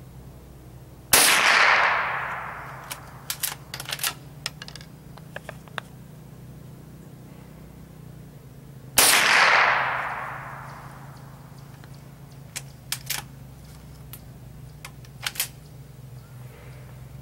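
Two shots from a Henry lever-action .22 LR rifle, about eight seconds apart, each followed by an echo that dies away over a second or two. After each shot come short metallic clicks of the lever being worked to chamber the next round.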